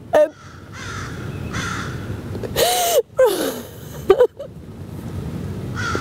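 A woman sobbing: shaky, breathy breaths, then a loud strained wail about three seconds in, followed by a short cry that falls in pitch, and more sobbing breaths.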